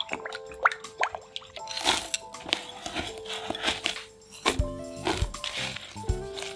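Light background music over a wire whisk stirring a runny cream mixture in a glass bowl, with wet splashing and clicks of the whisk against the glass.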